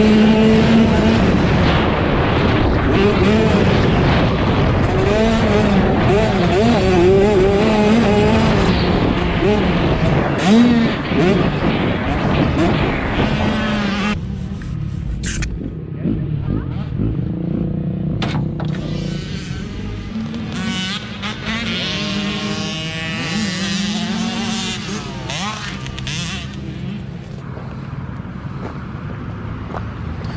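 Small two-stroke mini motocross bike engine revving up and down as it is ridden around a dirt track, recorded from the rider's helmet camera. About halfway through it drops to a lower, quieter run as the bike slows off the track.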